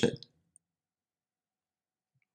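A man's voice finishes the word "Hotel" right at the start, then dead silence for the rest.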